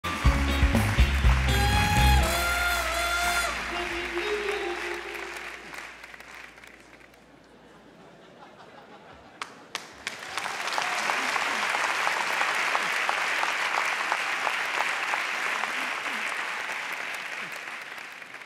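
A short, loud band jingle with held horn notes over heavy pulsing bass, dying away over a few seconds. After a quieter gap with two sharp clicks, a studio audience's applause swells and carries on steadily, fading slowly near the end.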